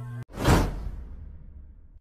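A whoosh sound effect from a subscribe-button outro animation: one loud swoosh about half a second in that fades out over the next second and a half. Just before it, a humming background track cuts off abruptly.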